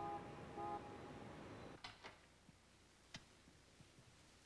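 Faint city street traffic noise with two short car-horn toots about half a second apart, cutting off sharply; then a few sharp clicks from a door latch and handle as a door is opened.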